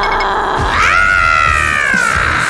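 A cartoon character's long, angry screech. It starts about three quarters of a second in, rises quickly, then slides slowly down in pitch and is still going at the end.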